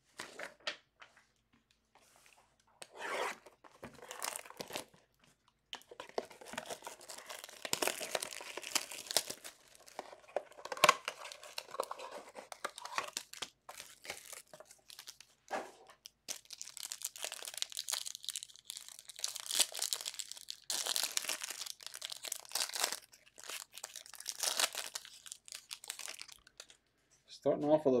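Plastic trading-card wrappers being torn open and crinkled as cards are handled, in irregular rustles with sharp clicks. A voice comes in near the end.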